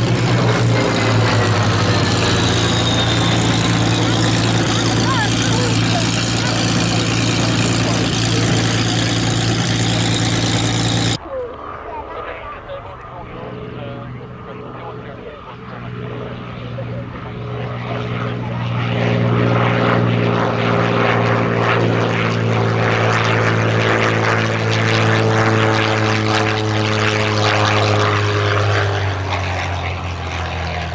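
Supermarine Spitfire T IX's Rolls-Royce Merlin V12 engine and propeller, loud and steady in flight, breaking off abruptly about eleven seconds in. After that the engine runs at lower power on the landing approach, growing louder as it comes nearer, its pitch sliding slowly.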